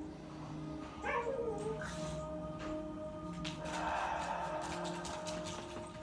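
A dog whines briefly about a second in, a short call that falls in pitch, followed by a brief rustle near the middle, over soft background music with steady held tones.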